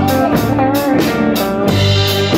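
A Vintage-brand single-cut electric guitar playing a lead line with bending notes over an electric bass guitar line, with drums keeping a steady beat.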